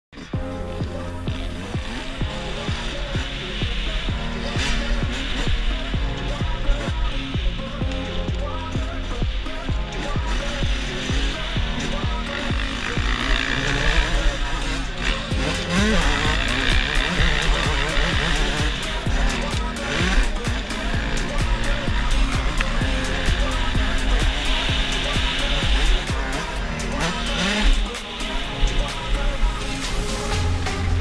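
Background music with a steady beat, with the sound of motocross dirt bike engines beneath it.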